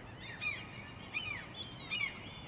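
Small birds chirping in the background: short, arching high calls repeated a few times a second, faint over a low steady hiss.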